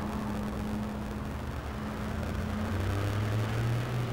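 Street traffic: a double-decker bus and cars passing, with a steady low engine hum over road noise.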